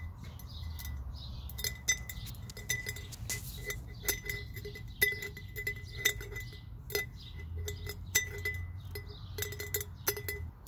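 Willow twigs being snipped with scissors over a glass mason jar: irregular clinks, one or two a second, as the cut pieces and the blades strike the glass, each with a short glassy ring.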